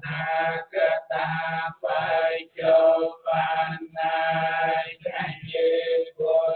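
Buddhist monk's chanting, a male voice amplified through a microphone, sung in long held syllables on a few steady pitches with short breaks between phrases.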